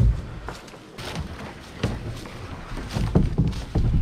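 Footsteps pushing through dense leafy undergrowth: leaves and twigs brushing and crackling against the legs and body, with irregular heavy thuds that are loudest about three seconds in.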